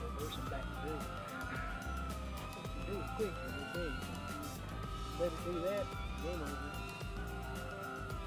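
Mini quadcopter's small motors and propellers whining steadily in flight, the pitch wavering a little as the throttle changes.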